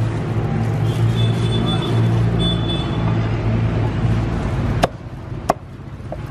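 A vehicle engine running with a steady low hum, which cuts off abruptly about four and a half seconds in. Then come two sharp chops of a cleaver on a wooden chopping block, about two-thirds of a second apart.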